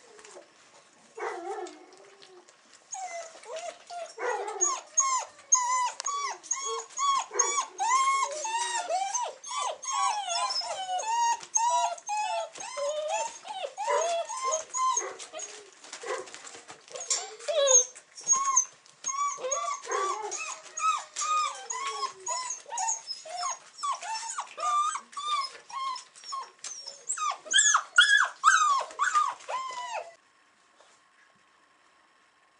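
A litter of six-week-old Weimaraner puppies whining and squealing, many short high calls overlapping in a rapid, almost continuous chatter. There are two brief calls in the first two seconds, and the chatter grows loudest and highest-pitched near the end.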